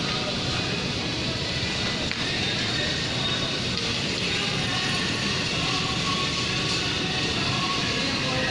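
Steady supermarket background noise: an even murmur of shoppers' voices with faint background music.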